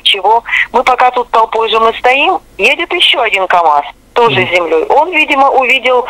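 A woman talking steadily over a telephone line, her voice thin and narrowed by the phone.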